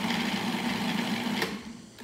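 Cuisinart food processor motor spinning its chopping blade through onion chunks with a steady hum, then cutting off about a second and a half in as the lever is released: pulse-chopping.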